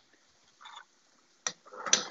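A metal kitchen strainer knocking once sharply against a frying pan, then a short scrape as it moves through the fries.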